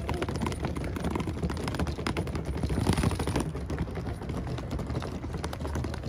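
Small hard-shell rolling suitcase pulled over brick paving, its plastic wheels clattering in a rapid, irregular run of clicks over the joints between the bricks.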